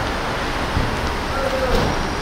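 Steady rushing outdoor traffic noise, with car engines idling along the curb.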